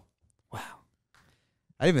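A man sighing: one short, breathy exhale about half a second in, followed by a fainter breath.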